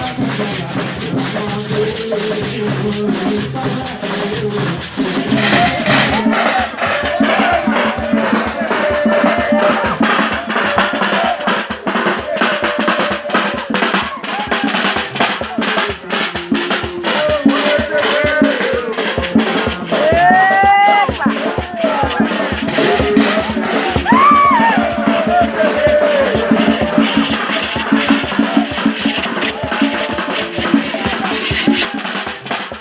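Afro-Brazilian Terecô ritual music: drums and rattles beating a fast, steady rhythm under the group singing of the dancers, with a high voice calling out twice near the middle. For the first six seconds or so a different, steadier piece of music plays before the ceremony sound takes over.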